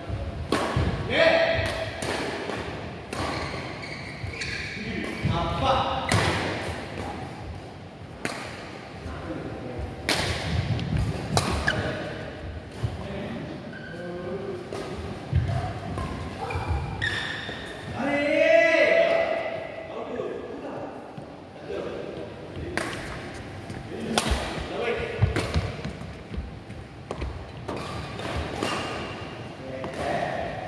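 Badminton rackets striking a shuttlecock in a rally: a series of sharp, irregularly spaced hits, with thuds of feet on the court floor.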